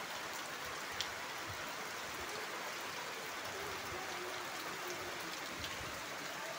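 Steady rain falling onto standing floodwater, an even hiss of drops hitting the water's surface, with one sharper drop tick about a second in.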